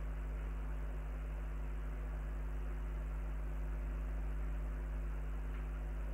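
Steady electrical hum with several constant tones and a faint background hiss, unchanging throughout, with no distinct events.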